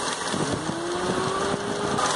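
Electric radiator cooling fan starting up with a whine that rises in pitch as it spins up, switched on by a jumper wire bridging its temperature switch, over the engine running. A few clicks as it kicks in.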